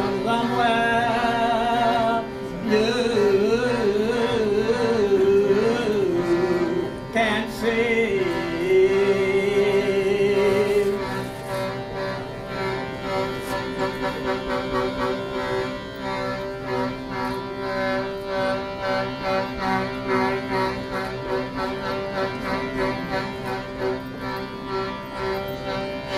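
Live music from a small hand-pumped wooden bellows instrument holding a steady, organ-like drone of chords, with a wavering higher melody line over it in the first ten seconds or so. About halfway through it drops to a quieter, pulsing drone.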